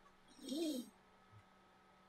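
A short, quiet hummed "mm" from a person on the voice call, its pitch rising and then falling over about half a second; otherwise near silence.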